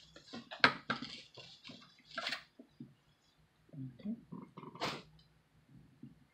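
Handling of takeout food packaging: paper wrapping and a foam clamshell container being unwrapped and moved, heard as irregular rustles and sharp clicks, the sharpest near the start and near the end.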